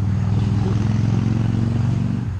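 An engine running steadily, a low even hum.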